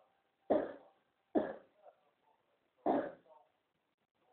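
A woman coughing: three short, sharp coughs, the third after a longer pause.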